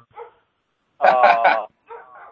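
The neighbour's dog barking: a quick run of about three barks about a second in.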